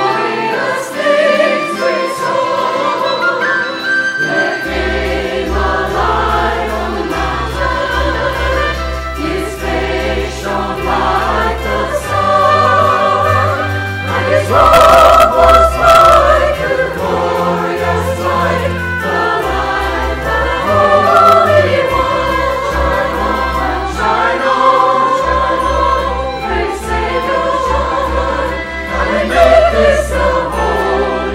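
Mixed church choir singing in parts, with low sustained bass notes of an accompaniment entering about five seconds in. The choir grows loudest about halfway through.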